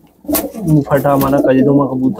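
Domestic pigeons cooing in a loft, under a man's indistinct talk.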